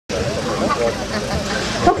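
Steady outdoor background noise with the indistinct chatter of people talking. The noise drops away just before the end.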